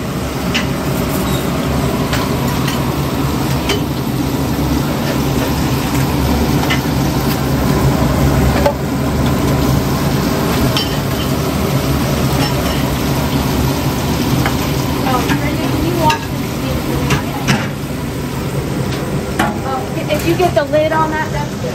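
Food sizzling on a hot flat-top griddle in a busy kitchen, a steady frying hiss over a low mechanical hum, with scattered light clicks and clinks of utensils.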